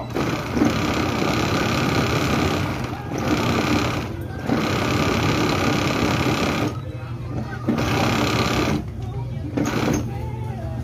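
Industrial sewing machine stitching in runs, stopping briefly several times, with the longer pauses near seven and nine seconds.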